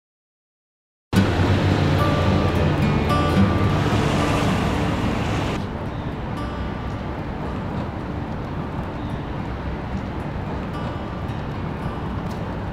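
Silence for about a second, then music starts suddenly over a steady background noise. About halfway through the music and overall level drop, leaving a quieter steady outdoor hiss, like distant traffic.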